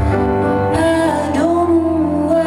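Piano and cello playing live: low sustained notes under a held melody line that slides up and wavers with vibrato about midway.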